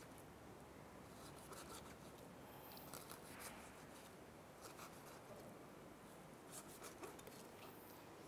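Faint knife slicing through raw snakehead fish fillet on a cutting board: a few soft, scattered taps and scrapes over near silence.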